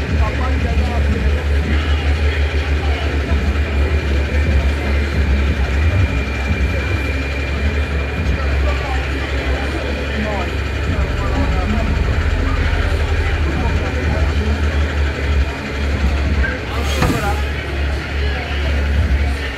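Indistinct voices of people talking over a steady, fluctuating low rumble. There is a single sharp knock near the end.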